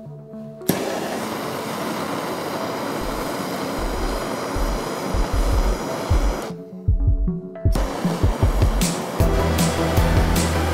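Bernzomatic MAP gas torch lit about a second in and burning with a steady hiss, breaking off for about a second past the middle and then burning again, with background music and a low beat underneath.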